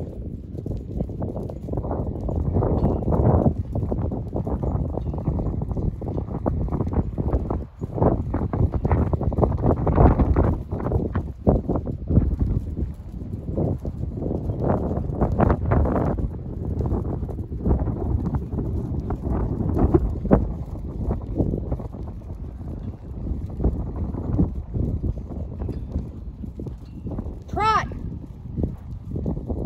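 Horse's hoofbeats at an extended trot on a dirt arena, an irregular run of dull knocks.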